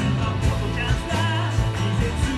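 Live rock band playing: electric bass holding steady low notes, electric keyboard and a drum kit keeping a regular beat.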